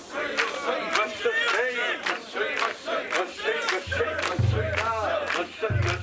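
Crowd of mikoshi bearers shouting festival chants together while carrying a portable shrine, many voices overlapping, with sharp knocks about twice a second and a low steady hum joining in the second half.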